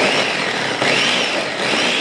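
A Ninja blender running at full speed, its blades chopping a thick, sticky mix of soaked cherries, dates, cashews and peanut butter. The motor's pitch rises and falls a few times as it works.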